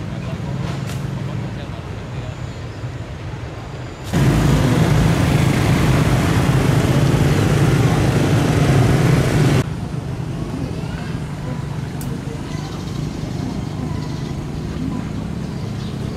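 Road traffic: a steady low engine hum, and for about five seconds in the middle the much louder noise of motorbikes passing close by, starting and stopping abruptly.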